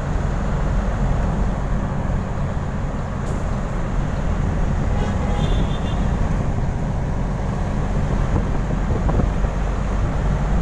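Steady low rumble of a moving vehicle, heard from on board as it drives along a street.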